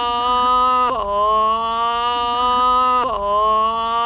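Motorcycle engine accelerating through the gears. It runs as a steady pitched note whose pitch drops and then slowly climbs again about every two seconds.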